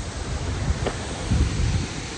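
Wind buffeting the microphone in uneven gusts over a steady rush of falling water from a waterfall.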